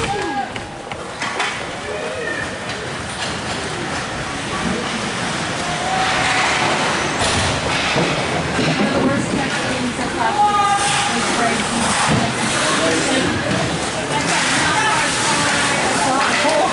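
Ice hockey rink during play, heard close to the boards: shouting voices over a steady rink din. Sharp clacks of sticks and puck come now and then.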